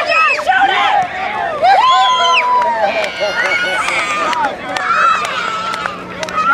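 Several people shouting and calling out at once, high children's voices among them, with a long held shout about two seconds in and shrill drawn-out calls near the end.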